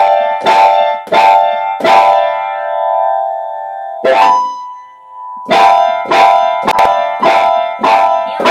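A piano or electric keyboard playing one chord, struck again and again about every half-second. The chord is held and fades for a couple of seconds, is struck once more at about four seconds, and after a short pause the repeated strikes resume near the middle.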